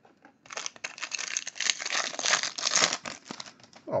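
The wrapper of a 2018 Bowman Draft trading-card pack being torn open by hand, crinkling and crackling for about three seconds, starting about half a second in.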